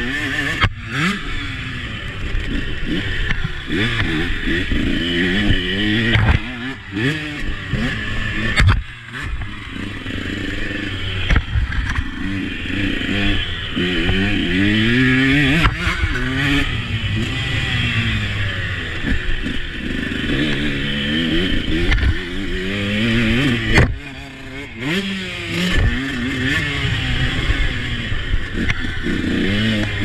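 Husqvarna 125 two-stroke motocross bike's engine revving hard and dropping back again and again as it is ridden round a dirt track, its pitch climbing through each gear and falling off when the throttle is shut, notably around 9 and 24 seconds in. A steady rushing noise and some rattle run under the engine throughout.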